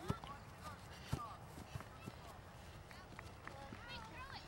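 Faint, distant voices of youth soccer players and spectators calling out, with two sharp knocks, one right at the start and one about a second in.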